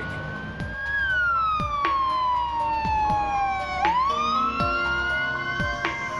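Police car siren wailing: the tone rises, falls slowly over about three seconds, then rises again, with music underneath.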